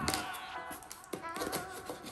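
Fingers tapping and brushing on a cardboard shipping box, a few light separate clicks, as background music fades out.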